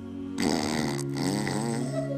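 Soft background vocal music: a steady humming drone, with a wordless voice rising and falling over it from about half a second in.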